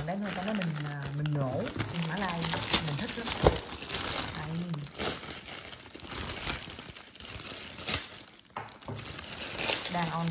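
Clear plastic bags crinkling and crackling in short, irregular bursts as a hand grips and handles them.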